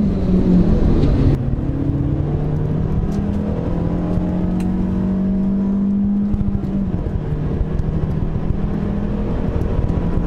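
Car engine heard from inside the cabin, running at low revs: its pitch climbs slowly, then drops about seven seconds in.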